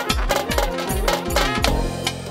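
Live Balkan Roma brass band music: wavering brass and reed melody over a steady bass-drum beat.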